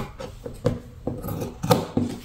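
Fabric scissors snipping through printed cloth, about four short, sharp cuts with pauses between them, as a curved sleeve edge is cut out.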